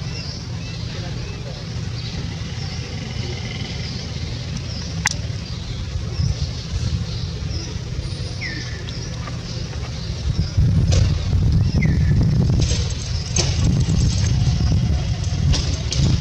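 Outdoor background noise: a steady low rumble that grows louder about two-thirds of the way through, with many faint high chirps, two short falling chirps, and a single sharp click about five seconds in.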